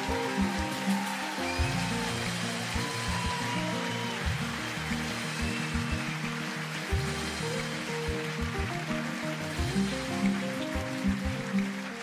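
Instrumental stage music with a changing melody over repeated low beats.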